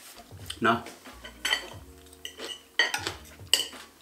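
Metal cutlery clinking and scraping on plates while eating: a spoon and a fork knocking against the dishes in several sharp clicks.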